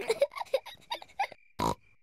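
Peppa Pig's cartoon voice giggling in a quick run of bursts, then one short snort near the end. A faint, steady cricket chirp sits underneath in the gaps.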